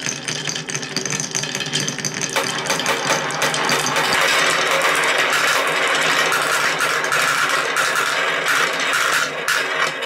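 Many marbles rolling and clattering in a continuous rattle, first along wooden marble-run chutes, then swirling round a large plastic bowl. The rattle grows louder about two seconds in and thins to separate clicks near the end as the marbles drain out.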